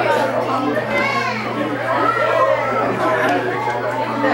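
Several people talking at once, an indistinct overlapping chatter of adult voices in a room, with a child's higher voice among them about a second in.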